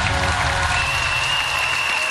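Studio audience applauding over music, with a long, steady high tone entering about two-thirds of a second in.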